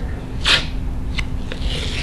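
Athletic tape being pulled and pressed onto an ankle: a short rasp about half a second in, a small click, then a longer rasp of tape near the end.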